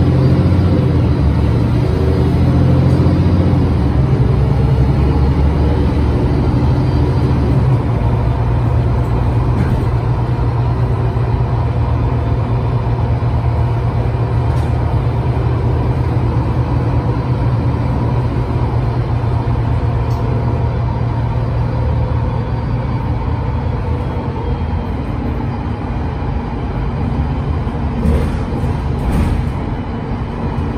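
Engine and drivetrain of an Otokar Kent C18 articulated city bus under way, heard from inside the passenger cabin: a loud, steady low drone whose note settles about eight seconds in and eases slightly in loudness toward the end.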